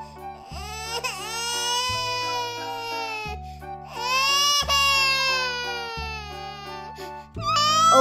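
A baby crying in two long wails of a couple of seconds each, the first about a second in and the second about four seconds in, over steady background music.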